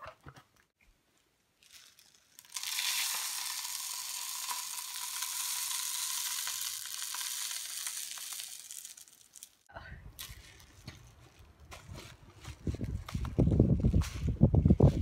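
Birdseed poured from a bag through a cardboard funnel into a glass wine bottle: a steady rushing patter of seed that starts a couple of seconds in and lasts about seven seconds. It is followed by a low rumble that grows louder near the end.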